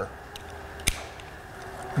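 A single sharp click about a second in, with a couple of faint ticks before it: the lever-operated action of an 1893 Bittner repeating pistol being worked by hand.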